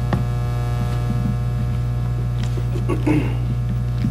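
Steady electrical mains hum, a low buzz with many overtones, with a brief faint sound about three seconds in.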